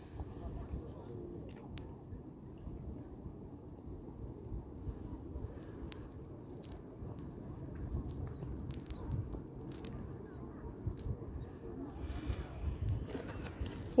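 Wind rumbling unevenly on a phone microphone outdoors, with a few faint clicks scattered through it.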